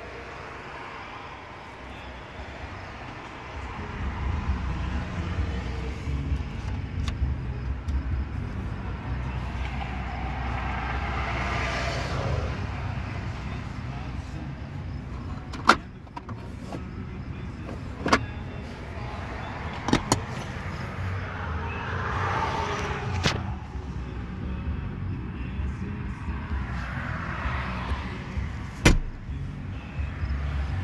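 Low steady rumble inside a Ram 1500 Tradesman pickup's cab, rising a few seconds in. Over it come several sharp clicks and swishing handling noise as the dash controls and console are touched.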